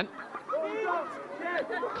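Men's voices talking and calling out over a background of chatter.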